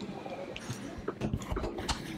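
Airport gate-area background: a steady murmur and hum with faint distant voices and a few light, irregular knocks in the second half.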